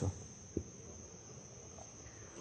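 Faint, steady, high-pitched chirring of insects, with a single soft low knock about half a second in.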